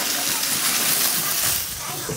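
Fish sizzling on the hot cast-iron grate of a Weber Genesis II E-410 gas grill, a steady hiss that drops slightly at the end as the grill lid comes down.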